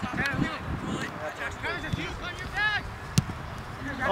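Distant shouts of players and spectators around a soccer field, in short separate calls, with one sharp thud of a soccer ball being kicked about three seconds in.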